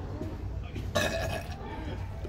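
A person burping once, about a second in, after chugging a drink.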